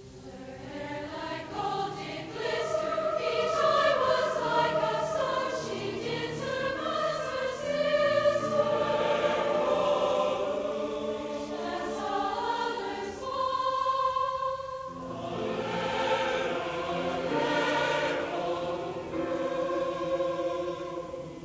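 A mixed choir singing in full chords, swelling in over the first few seconds; about three-quarters of the way through, the lower voices drop out briefly under a held high note before the full choir comes back in.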